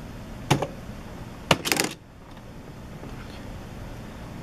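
Smith Corona SD 300 electronic typewriter mechanism working: a single click about half a second in, a sharper click about a second and a half in, then a quick rattling run of rapid mechanical strokes lasting about a third of a second.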